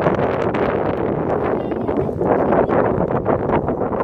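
Wind buffeting the microphone: a loud, gusting low rumble.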